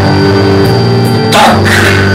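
Live band music: a bowed violin and string instruments playing held low notes that shift in pitch, with a short noisy hit about one and a half seconds in.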